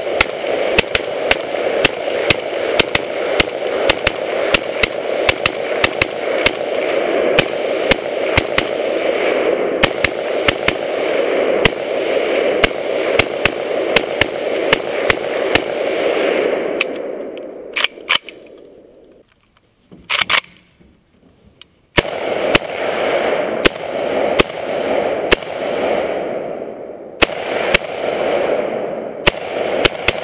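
Vector Arms AK-47 underfolder rifle in 7.62x39 fired semi-automatically in rapid succession, about two shots a second. The shooting breaks off for a few seconds past the middle, then the rapid shots resume.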